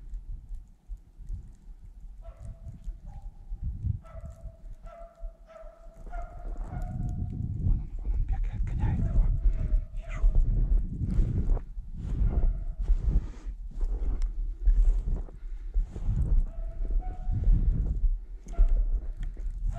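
Dogs barking repeatedly in the forest from about two seconds in, short calls over and over, over a low rumble on the microphone that grows louder partway through.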